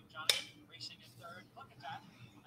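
Faint voice of a track announcer calling a horse race through the race broadcast, with one sharp click about a quarter of a second in.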